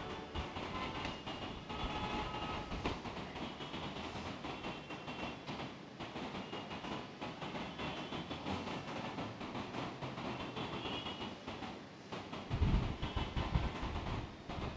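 Quiet room ambience: a steady low hum of noise with faint shuffling and clicks. Near the end, a few louder low thumps and rustling close to the microphone, as paper is handled at the altar microphone.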